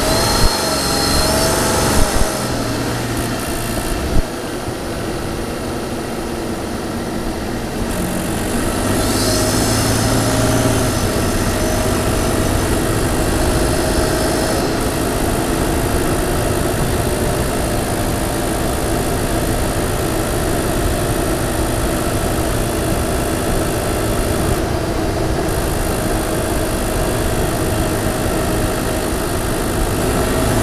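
Twin-turbo V6 of a 2022 Toyota Tundra TRD Pro with TRD air filters, picked up by a microphone under the hood while driving in sport mode. The engine pitch wavers in the first couple of seconds, then the engine grows louder about nine seconds in and holds a steady note.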